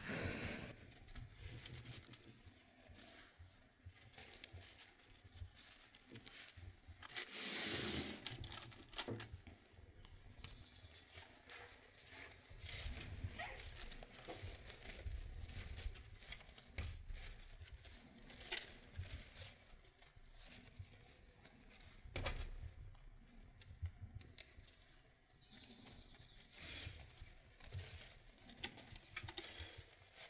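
Faint rustling and crinkling of stiffly starched lace being folded into pleats and pinned by hand, with a louder, longer rustle about seven seconds in and a couple of short clicks later on.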